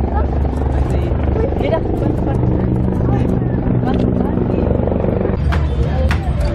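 A steady low engine drone, with people talking nearby.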